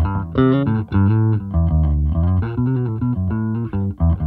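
Electric bass played through a Boss Dual Cube Bass LX amp set to its Flat preamp mode, with the EQ flat and the gain low for a clean tone. It is a quick riff of plucked notes, several a second.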